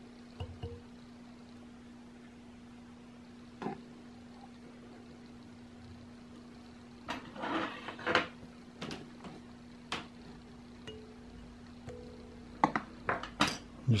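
Quiet, scattered clicks and light metallic clinks of fly-tying tools handled at the vise while the thread is knotted off and cut, mostly about 7–8 seconds in and again near the end. A faint steady hum runs underneath.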